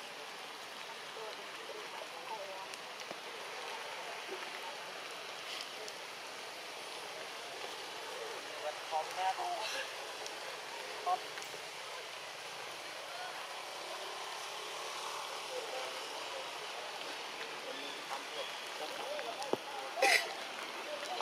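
Steady forest background hiss, with faint short chirping calls scattered through it that cluster and grow a little louder about nine seconds in.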